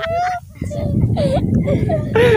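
Boys and a man laughing together: high-pitched, gliding laugh sounds broken by short gaps.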